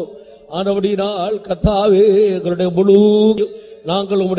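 A single voice chanting in long, wavering held notes, as in devotional praise chanting, with short pauses at the start and near the end. A brief knock comes about one and a half seconds in.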